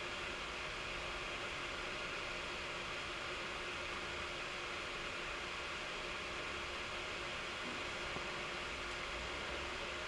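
Steady hiss of background room tone with a faint, constant low hum underneath; no distinct sound events.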